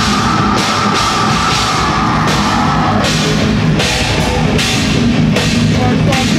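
Live heavy metal band playing loud: distorted electric guitar, bass guitar and drum kit, with cymbal crashes about once a second. A steady high note rings over the first half, and the part changes about halfway through.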